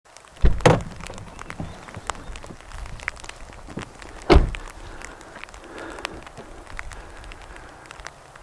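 Outdoor ambience with many faint scattered ticks and two heavy thumps, a doubled one about half a second in and a single one about four seconds in.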